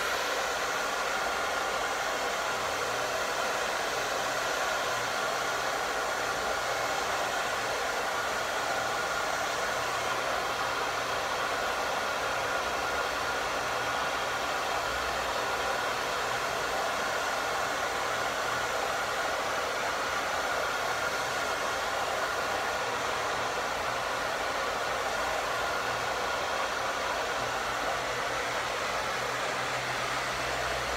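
Handheld hair dryer blowing steadily on a customer's hair, a constant rush of air with a thin steady whine running through it.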